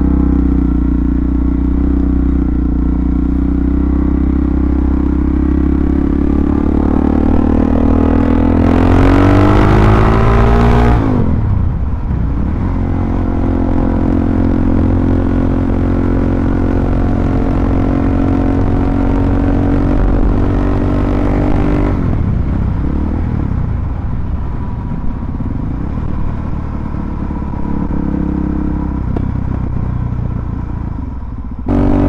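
Suzuki DR-Z400SM's single-cylinder four-stroke engine running under way. The revs climb for several seconds with a rush of wind noise and drop suddenly about eleven seconds in. It then holds a steady cruising note and eases off to a lower note a little past twenty seconds.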